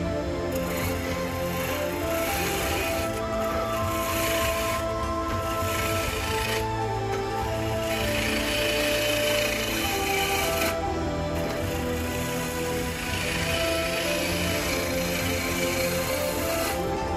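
Background music with held notes, over the hiss of a turning tool cutting solid red heart cedar on a spinning Delta Midi lathe, coming in several passes a few seconds long as the piece is smoothed.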